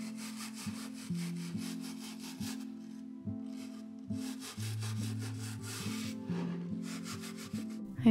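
A toothbrush scrubbing in quick back-and-forth strokes over the bark edge of a wood slice and the dried paper clay beside it, pausing briefly midway.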